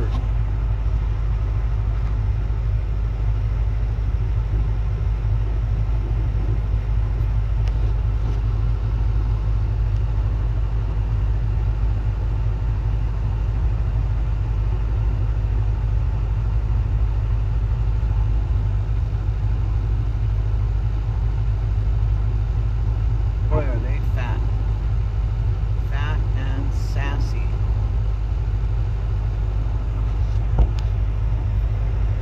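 A vehicle engine idling steadily, a constant low rumble. A few brief pitched calls or voice sounds come in about two-thirds of the way through.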